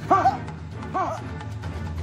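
Background music with a steady low beat, over which a dog barks twice, about a second apart.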